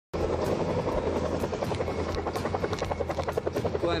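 Helicopter rotor beating steadily and close by, about six or seven pulses a second.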